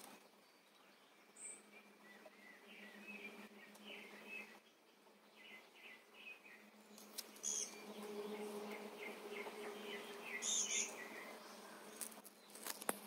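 Faint outdoor ambience: a low steady insect buzz that grows stronger in the second half, with scattered short chirps of small birds. Two brief crackles come in the second half.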